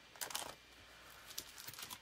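Paper and plastic transfer sheets rustling and crinkling as they are handled and set aside: a short burst about a quarter second in, then fainter rustling near the end.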